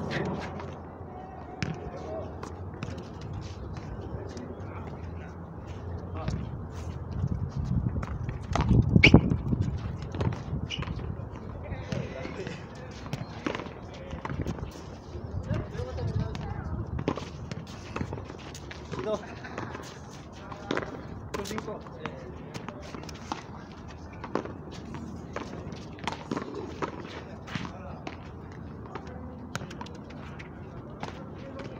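Frontón ball play: repeated sharp smacks of the ball off the players' hands and the concrete front wall at irregular intervals, over voices of players and onlookers. A louder burst of noise comes about nine seconds in.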